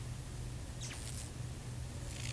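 Steady low electrical hum under a faint hiss of static from a bank of old CRT televisions, with a brief high squeak about a second in.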